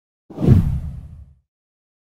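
A whoosh transition sound effect with a deep low rumble under it, starting a moment in, peaking quickly and fading away over about a second.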